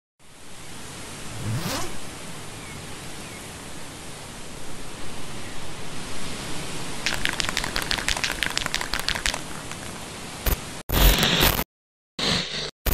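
Steady hiss with a whoosh rising in pitch about a second and a half in, a fast run of sharp clicks from about seven to nine seconds, then short loud bursts chopped off by sudden silences near the end: edited intro sound effects.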